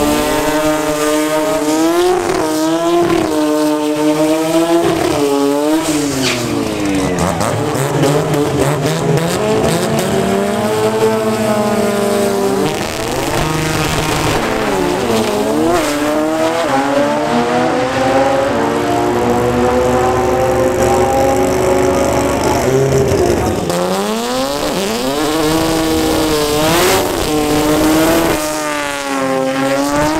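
Toyota Starlet drag cars: an engine revving hard through a tyre-squealing burnout, then launching about seven seconds in and climbing in pitch through repeated gear changes on a full-throttle pass. Near the end another burnout's revving starts.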